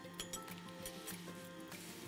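Quiet background music with a few light metallic clinks from a spoon tapping a fine-mesh sieve while cocoa powder is sifted into a cake pan.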